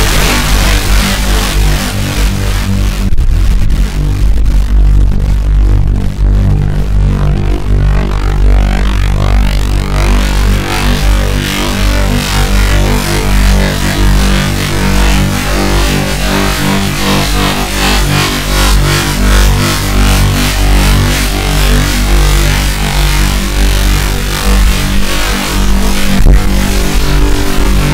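Moog Model 15 modular synthesizer playing loud electronic noise music: steady low sustained tones under a bright hissing wash. About three seconds in the high hiss drops away, then builds back over the next several seconds.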